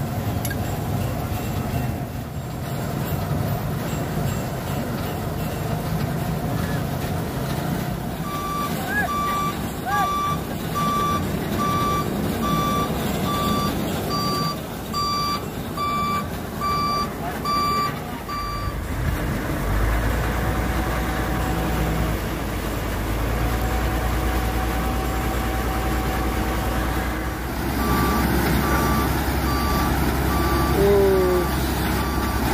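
A truck's reversing alarm beeping at a steady pace, a little over once a second, for about ten seconds in the middle and again near the end, over heavy truck engines running. About two-thirds of the way in, a deep steady engine drone sets in as the tow trucks work to lift the stuck dump truck.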